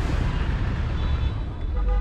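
Steady low rumble of a traffic jam: the engines of cars, a bus and trucks idling close by.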